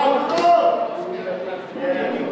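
Men's voices talking and calling out in a large echoing hall, with one sharp knock about half a second in.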